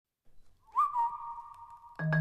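One whistled note that swoops up at the start and is then held steady for just over a second.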